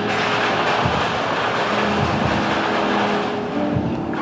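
A loud, steady rushing noise that eases off near the end, over background music.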